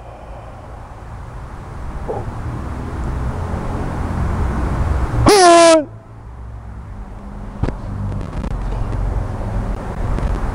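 A short, loud, pitched shout with a slightly falling tone about five seconds in, a martial-arts kiai given with a kick. Under it a low traffic rumble grows steadily louder, and there is a single sharp click near eight seconds.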